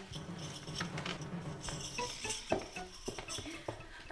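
Scattered light clinks and taps over a faint low hum.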